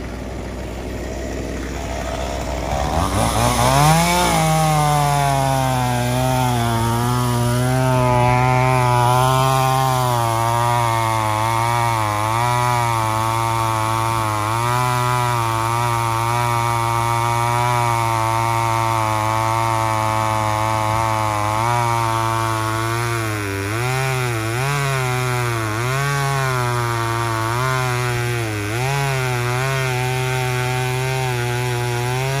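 Small Stihl two-stroke chainsaw revving up to full throttle a few seconds in, then cutting through a log. Its pitch drops and wavers under load, with several dips near the end.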